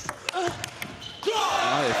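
Table tennis ball clicking sharply off the bats and table a few times in a rally. About a second and a half in, the point ends with a loud burst of spectator cheering and a shouting voice.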